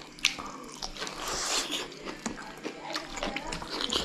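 Close-up mouth sounds of people eating braised pork belly by hand: biting and chewing, with scattered sharp clicks, the loudest about a quarter second in, and a wetter, noisier stretch of chewing a second or so later.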